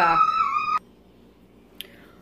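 A woman's voice holding out one word, cut off sharply, then a quiet kitchen room tone with a single short click near the end.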